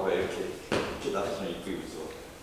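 Speech: a person talking in Korean, with a short sharp sound about two-thirds of a second in.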